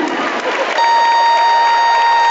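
Arena crowd applauding and cheering, then, a little under a second in, a steady electronic buzzer sounds on one pitch and keeps going.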